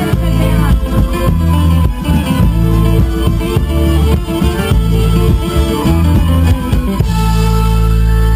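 Live folk band playing an up-tempo tune with stop-and-start accents on accordion, violin and electric bass. About seven seconds in, the band settles onto a long held chord.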